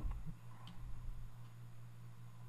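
Quiet room tone between narration: a steady low electrical hum with faint background hiss and a couple of tiny faint clicks.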